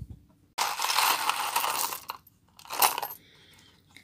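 A bag of mixed metal and glass beads poured out onto a table, the beads clattering for about a second and a half, then a short second rattle.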